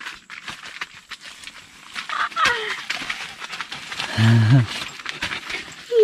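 Rustling and light knocks of people and a dog moving about on a nylon tent floor, with a short high falling vocal cry about two seconds in and a brief low grunt-like vocal sound a little after four seconds.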